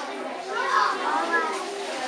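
Children's voices chattering in a hall, with one high child's voice rising above the rest about half a second in.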